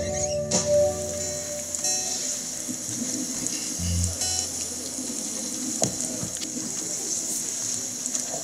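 The choir and keyboard's last held note dies away within the first second, leaving a steady hiss of outdoor background noise.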